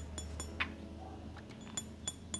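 Heavy metal cap of a Maison Asrar Fakhama perfume bottle tapped gently up close to the microphone: a few light metallic clinks with a bright ring near the start and another just before the end.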